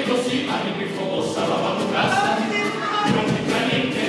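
Carnival comparsa choir singing in harmony, with Spanish guitar accompaniment.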